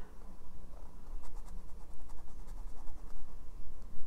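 A felt-tip marker scratching on paper in quick back-and-forth strokes, colouring in a small box on a printed savings tracker.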